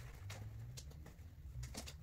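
Tent poles and nylon tent fabric being handled: light rustling and a few soft clicks, most of them just before the end, over a low, steady hum.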